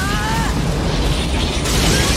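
Animated-film destruction sound effects: a shouted line breaks off in the first half-second, then a loud, dense crashing rumble grows brighter and louder toward the end.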